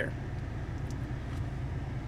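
Steady low hum of the Volkswagen CC's turbocharged 2.0-litre four-cylinder idling, heard from inside the cabin.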